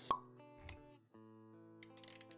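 Intro-animation music and sound effects: a sharp pop just after the start, a short low thump a little later, then soft sustained music notes come back in after about a second, with a few light clicks near the end.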